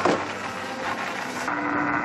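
Steady noise of a small fishing boat under way at sea, its engine running under wind and waves, with a sharp knock at the very start.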